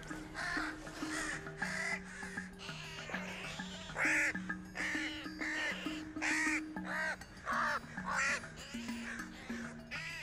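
American crows cawing over and over, about two harsh caws a second, over background music with sustained low notes.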